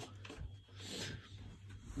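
Faint rubbing and handling noise from a phone being moved about, swelling briefly around the middle, over a steady low hum.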